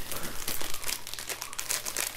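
Crinkling of a snack wrapper being handled and opened: a dense, irregular run of crackles.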